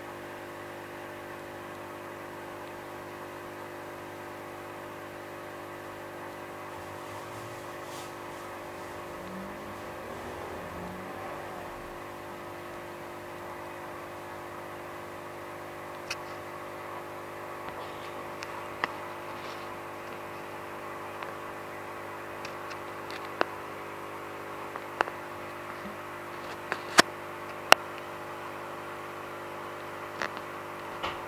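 A steady hum of a small motor, made of several fixed tones, with scattered sharp clicks through the second half, the two loudest close together near the end.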